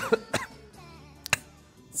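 A man's short cough in the first half-second, then quiet background music with a single sharp click about a second and a quarter in.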